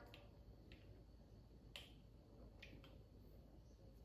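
Near silence: room tone, with a few faint clicks, the clearest a little under two seconds in.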